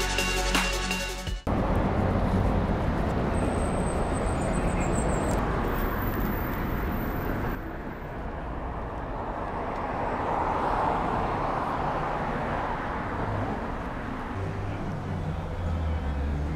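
Electronic background music cuts off abruptly about a second and a half in, giving way to outdoor road-traffic noise. Cars on the road pass by, with one swelling and fading about two-thirds of the way through.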